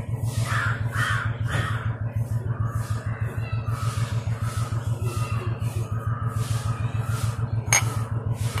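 A bird calls three times over a steady low throbbing hum, and a sharp click comes near the end.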